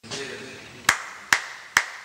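Three hand claps in quick succession, a little under half a second apart. They are the signal that sets off a littleBits sound-trigger module, which switches on a lamp that turns horse shadows.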